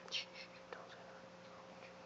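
A few short, faint breathy hisses like whispering in the first half second, then quiet room tone.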